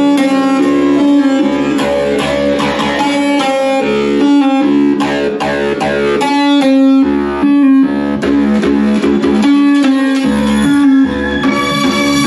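Dub music played loud through a sound system: a deep bassline that drops out and comes back several times under plucked melodic notes.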